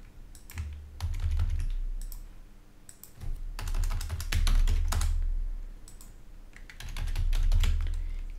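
Typing on a computer keyboard: irregular clicks of keys as a shell command is entered, with a low rumble beneath that swells and fades three times.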